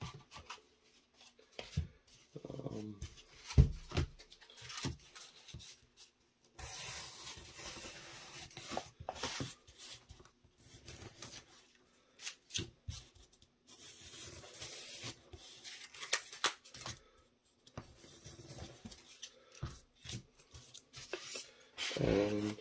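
Craft knife cutting through painted foam board in scratchy strokes, in two longer bouts, amid knocks and rustles of foam pieces being handled on a cutting mat.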